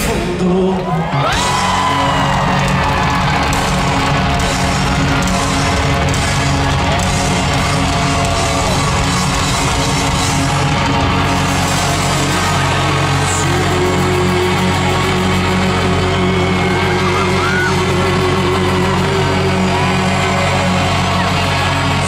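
Live rock band playing loudly, with the lead singer singing into the microphone and the crowd yelling along.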